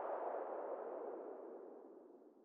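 Synthesized noise sweep from an electronic dance remix dying away as the track ends, falling in pitch and fading out.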